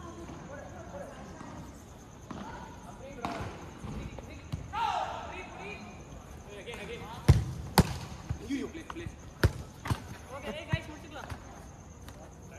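Football being kicked on an artificial-turf pitch: a run of sharp thuds of boot on ball, the loudest a little past halfway, then several more over the next few seconds, with players shouting to each other earlier on.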